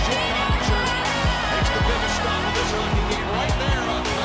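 Background music with a beat of deep bass hits that drop in pitch.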